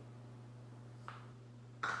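Quiet room tone with a steady low electrical hum. There is a faint brief rustle a little past halfway and a short sharp sound near the end.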